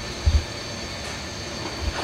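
Steady background noise, like a fan or air conditioner running, with two short low thumps: one about a third of a second in and one near the end.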